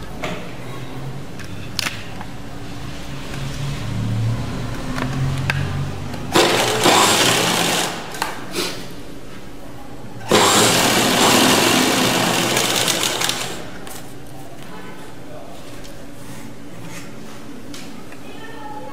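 Domestic straight-stitch sewing machine stitching thin fabric, running in two bursts: one of about two seconds starting six seconds in, and a longer one of about three seconds starting ten seconds in. A few clicks and quieter stretches lie between the bursts.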